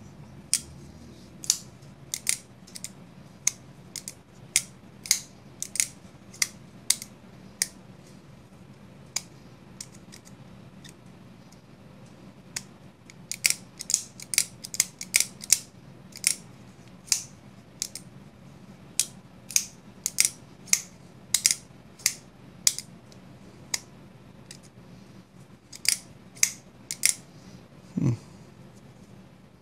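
Civivi Vision FG folding knife with a Superlock being worked open and shut over and over: dozens of sharp clicks of the lock and blade, in irregular runs, thickest around the middle and near the end. The lock is sticking and has just been dressed with PTFE powder.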